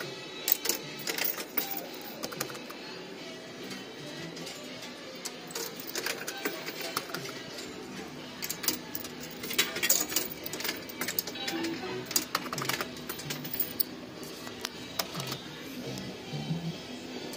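Amusement arcade fruit machines playing their music and electronic jingles, with frequent short sharp clicks as a 10p fruit machine's buttons are pressed during play.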